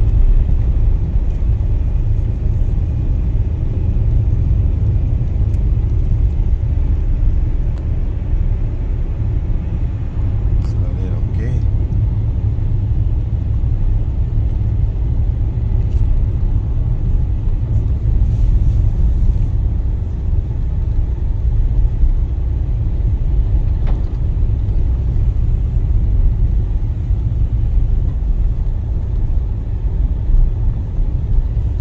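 Car driving at low speed, heard from inside the cabin: a steady low rumble of engine and tyre noise with no big changes in pace.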